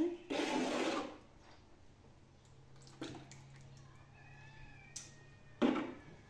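A ladle pouring a milky dairy liquid into a cloth straining bag, splashing. There is a loud pour lasting under a second near the start, a short one about halfway and another just before the end.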